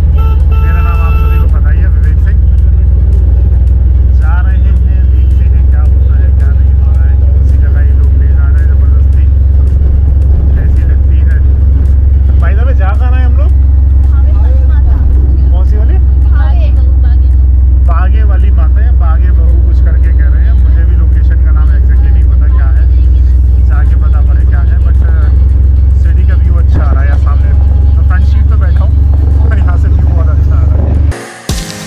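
Loud, steady low rumble of a moving four-wheeler auto-rickshaw, heard from inside its passenger cabin: engine and road noise, with voices faintly over it.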